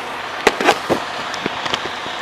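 A few sharp clicks and knocks over a steady background hiss, handling noise of equipment close to a body-worn camera.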